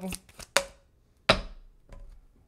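Tarot cards and a card deck being knocked and set down on a wooden desk: three sharp knocks, the loudest a little past halfway.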